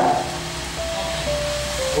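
Steady room noise with a few faint held notes that step down in pitch twice through the second half.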